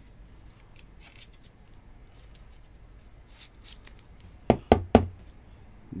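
Quiet handling of a trading card in a clear plastic holder, with a few faint ticks, then three quick, sharp plastic knocks about four and a half seconds in.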